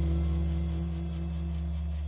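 The end of a jazz track with saxophone and double bass: a held final chord with low bass notes slowly dying away, and its highest note stopping near the end.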